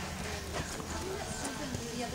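Hoofbeats of a Quarter Horse trotting on arena sand, with people talking in the background.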